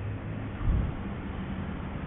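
A low steady hum over faint background noise, with a slight low swell a little under a second in.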